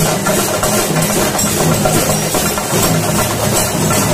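Chenda drums played loudly with sticks in a dense, continuous rolling beat.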